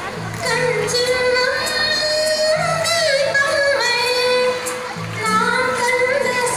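A song: a woman's voice singing long held notes that bend and waver in pitch, over a low accompaniment.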